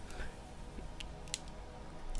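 A quiet pause between spoken phrases: faint room tone from a small room, with two brief faint clicks a third of a second apart about a second in.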